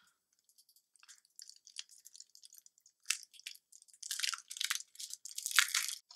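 Crinkling and rustling of a small packaged item being handled and opened in the hands. It starts as faint scattered crackles about a second in and grows louder and denser over the last couple of seconds.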